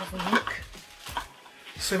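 Paper leaflets and small boxed items being handled, with a few light clicks and rustles. There is a brief murmur of voice near the start.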